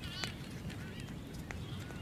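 Waved albatrosses fencing with their bills: two sharp clacks of bill on bill about a second apart, over steady surf, with faint high calls.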